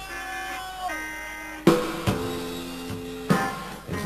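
Live rock band opening a song: held electric guitar notes, one sliding down in pitch about a second in, then the drum kit comes in with a hard hit and the band plays on, with another drum hit near the end.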